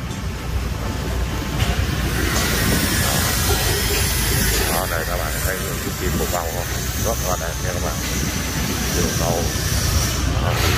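Outdoor street ambience: a steady rushing noise with a hiss that grows stronger about two seconds in, and faint voices of people in the background.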